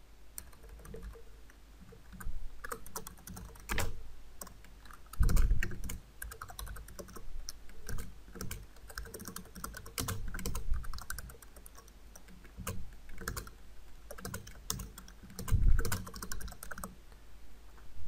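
Typing on a computer keyboard: irregular runs of keystroke clicks, with two heavier thumps about five seconds in and again near the end.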